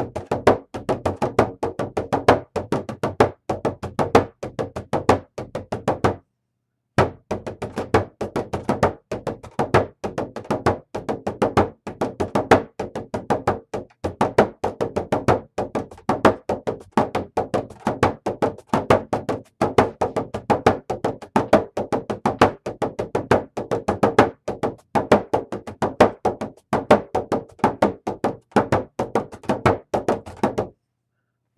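Bodhrán (Irish frame drum) with a synthetic head, struck with a wooden beater in a steady run of quick strokes, with a brief break about six seconds in.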